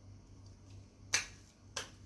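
Two short, sharp clicks about 0.6 s apart, over a faint steady low hum.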